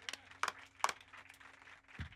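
A few faint, sharp clicks and knocks, three in the first second, over a low steady hum.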